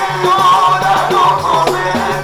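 Devotional Maulid singing: a lead voice on a microphone sings a wavering melody with the group, over a steady rhythmic percussion accompaniment.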